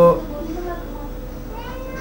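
A man's drawn-out spoken vowel at the very start, ending in a fraction of a second, then a low murmur of faint voice sounds until speech picks up again.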